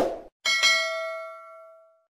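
A brief click at the start, then a bright notification-bell ding about half a second in that rings on and fades away over about a second and a half: the sound effect of a subscribe button and bell animation.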